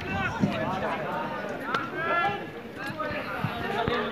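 Several voices talking over one another, with a few short, sharp clicks or slaps among them.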